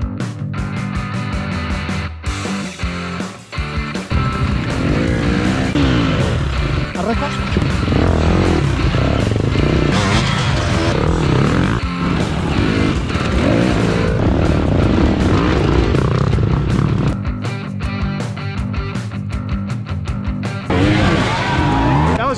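Background music laid over dirt bike engines revving up and down, the engines loudest through the middle stretch.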